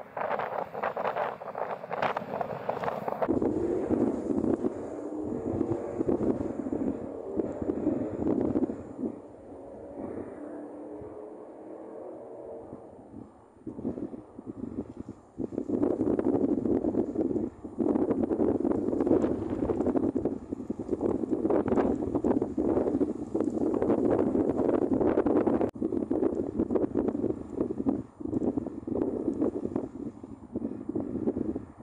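Wind buffeting the microphone in irregular gusts. It is loud for several seconds, eases off for a few seconds around the middle, then picks up again.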